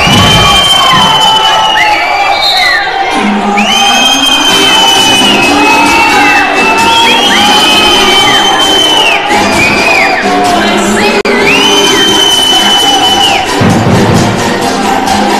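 Basketball arena crowd cheering and shouting, with many long high-pitched calls overlapping one another, over music playing in the hall during a stoppage in play.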